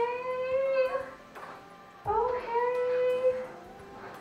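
A woman's voice singing two long held notes, each about a second and a half long and rising slightly in pitch, with a short gap between them.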